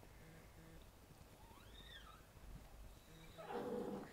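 A faint, high-pitched cry that rises and falls once, under a second long, about two seconds in, against quiet room tone; a soft rustle of handling noise builds near the end.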